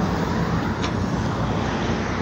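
Road traffic on a multi-lane street: a steady wash of passing-car noise with a low engine hum underneath.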